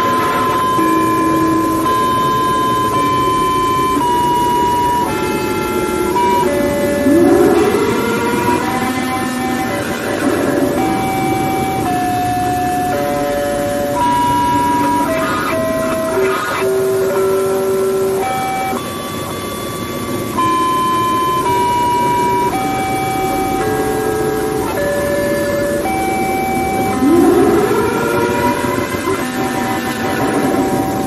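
Loud electronic tones held and stepping from pitch to pitch like a slow, distorted melody, several at once. A rising swoop comes about seven seconds in and again near the end.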